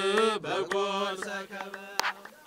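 Ethiopian Orthodox hymn chanted by a voice over a steady held drone, growing softer after about half a second. A sharp click comes near the end.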